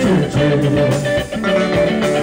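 Live band music with an electric guitar playing over moving bass notes and a steady beat.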